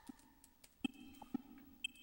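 Computer keyboard keystrokes, about half a dozen sharp clicks over a faint low hum, as the label "Sample Length" is typed.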